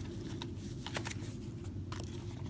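Handling sounds of a leather wallet phone case: a few light clicks and rustles as a foam packing insert is lifted out of it and the case is turned over.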